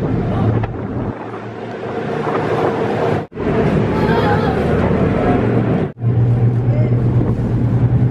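Ferry engine running with a steady low drone, with wind buffeting the microphone on the open deck. The sound breaks off for an instant twice, about three and six seconds in.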